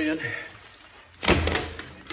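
A sudden loud rasp of nylon fabric about a second in, fading out, as a camouflage plate carrier is pulled up off over the wearer's head.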